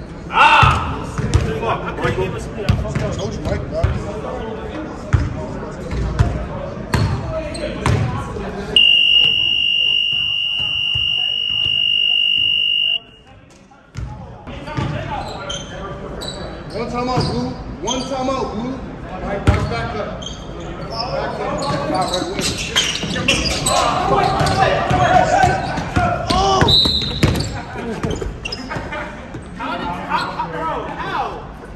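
Basketballs bouncing on a gym floor among players' voices, echoing in a large hall. About nine seconds in, an electronic buzzer sounds one steady high tone for about four seconds and then cuts off.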